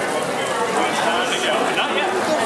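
Crowd chatter: many voices talking at once, with no single speaker standing out.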